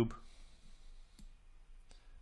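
A couple of faint, sharp computer mouse clicks over low room hiss as a cube is created in the 3D software.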